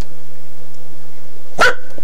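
A steady low hum, then one short, sharp yelp-like sound about a second and a half in.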